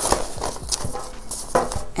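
A stack of paper envelopes being shuffled by hand in a metal tin: papery rustling with a few irregular soft knocks.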